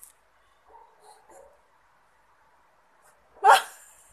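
A quiet stretch with a few faint, soft voice sounds, then a short, loud burst of a woman's laughter near the end.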